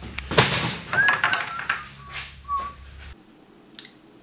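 A man whistling a tune in short sliding notes while wooden boards knock and clatter as they are pulled from a lumber rack. About three seconds in the sound drops to quiet room tone.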